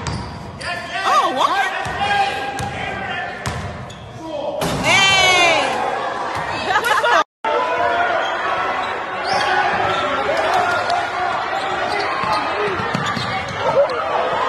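Basketball bouncing on a hardwood gym floor, with voices shouting in an echoing hall. The sound cuts out briefly about seven seconds in.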